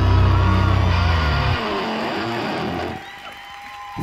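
A live rock band lets its last chord ring out at the end of a song. The heavy bass and the full band stop about one and a half seconds in, sliding and wavering notes fade out about a second later, and a faint held tone is left near the end.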